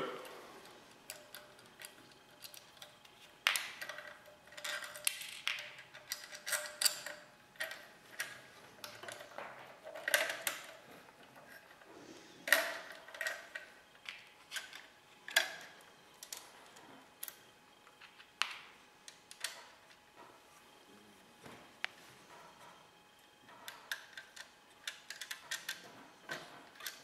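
Irregular small metallic clicks and taps from a wing nut, washer and bolt being handled and fitted on the aluminium bracket and grid of a TV aerial, some taps with a brief metallic ring.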